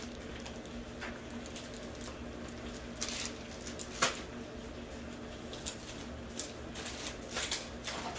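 Packaged groceries handled on a table: a few light clicks and taps as items are moved and set down, the sharpest about four seconds in, over a steady low background hum.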